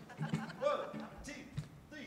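Faint voices and a few light knocks in a large hall, a short lull between a spoken song introduction and the band's first notes.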